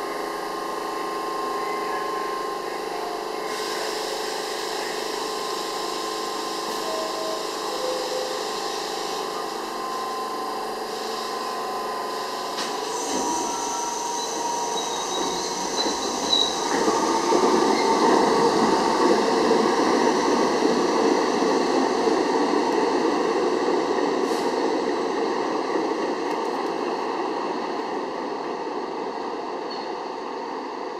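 R68-series New York City subway train standing at the platform with a steady electrical hum. About 13 seconds in it starts to pull out: the rumble of wheels on rail and motors grows, is loudest a few seconds later, and then fades as the train leaves.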